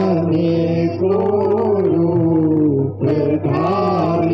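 Devotional singing in a chanting style, one voice holding long, slowly bending notes, with a short break about three seconds in, over a steady low hum.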